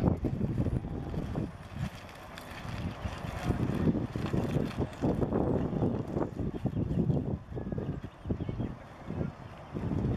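Wind buffeting the microphone outdoors: an uneven low rumble that rises and falls in gusts.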